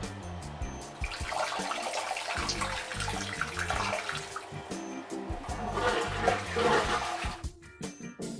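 A toilet flushing: rushing water that begins about a second in and dies away near the end. Background music with a steady bass runs underneath.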